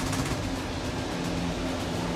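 Cable car gondola moving slowly through its terminal station, heard from inside the cabin: a steady mechanical hum with faint low tones from the station's cable machinery.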